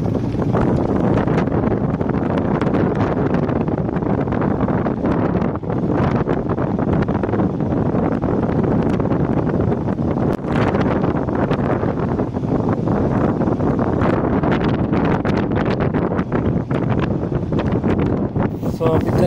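Heavy wind noise buffeting the microphone on a moving motorcycle, a loud, rough rushing with irregular gusty flutters, with the bike's running sound underneath.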